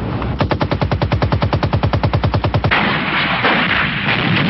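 Machine-gun fire: one long burst of rapid, evenly spaced shots, about thirteen a second, lasting a little over two seconds, then a dense, steady noise of battle takes over.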